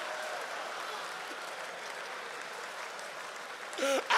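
Audience applauding steadily, slowly dying down, with a man's voice briefly near the end.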